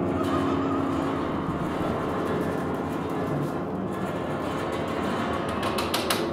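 Free improvised music: low notes ringing on and fading early, under a dense, grainy, rumbling texture, with a few sharp clicks near the end.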